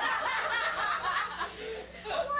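People laughing and chuckling at the punchline of a joke, the laughter dying down near the end.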